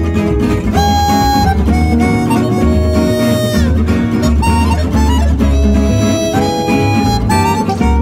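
Gypsy jazz ensemble playing an instrumental passage. A chromatic harmonica carries the melody in held notes, one bending down partway through, over acoustic rhythm guitar and a double bass pulse.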